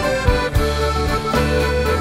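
Instrumental passage of a French chanson band: a chromatic button accordion plays held melody notes over guitar and a steady low bass, with regular sharp beats.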